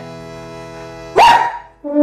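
A steady held musical tone, then about a second in a single short, sharp dog bark that rises in pitch.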